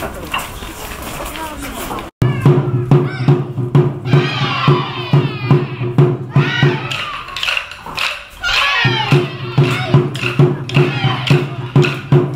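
Ensemble taiko drumming: a group striking barrel-shaped nagado-daiko and rope-laced drums in fast, loud, even strokes, with voices shouting over the beat. The drumming starts abruptly about two seconds in, after low chatter. It breaks off for about a second near the middle, then resumes.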